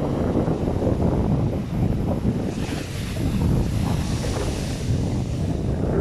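Ocean surf breaking on a sandy beach, with strong wind buffeting the microphone throughout; a louder hiss rises and fades in the middle.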